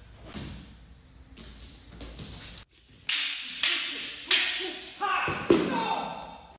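A few faint knocks, then a sudden drop to silence, followed by a run of loud thumps mixed with shouting voices, the loudest thump near the end.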